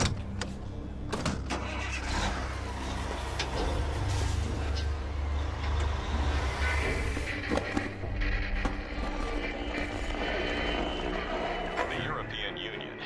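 Diesel truck engine running with a steady low rumble, under dramatic background music and a few sharp clicks in the first couple of seconds.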